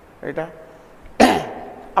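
A man's single loud, sharp cough about a second in, close to the microphone, preceded by a brief vocal sound.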